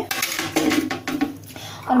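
A cover being put on a steel pot of batter: a quick clatter of metal clinks in the first half-second, followed by lighter knocks of kitchen utensils being handled.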